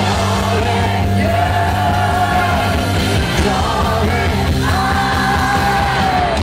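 Live rock band playing, with a male lead singer belting long held notes into a microphone over drums and bass, recorded loud from the audience.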